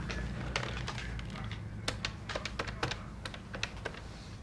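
Buttons on a desk telephone being pressed to dial a number: a run of short, irregular clicks.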